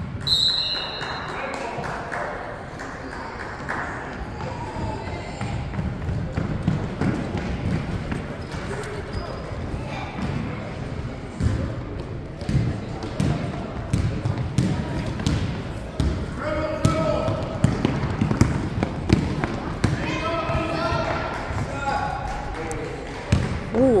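A basketball bouncing on a hardwood gym floor among scattered thumps of play, with background voices of players and spectators, echoing in a large gym. A brief high tone sounds just after the start.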